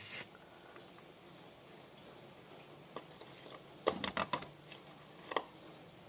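Light plastic handling noises by a gloved hand: a few short clicks and knocks, with a quick cluster of them about four seconds in, as a plastic syringe is picked up over a plastic tray.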